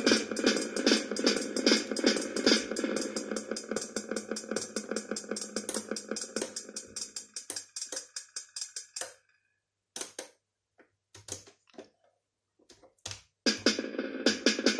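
Drum-machine sequence of fast, even hits, about eight a second, played through a reverb-echo effects pedal. About nine seconds in the pattern thins out and stops, leaving a few single hits, and a new fast pattern starts near the end.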